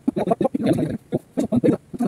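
A garbled, fast-chattering voice in short syllable-like bits several times a second, with brief gaps, like sped-up or distorted speech.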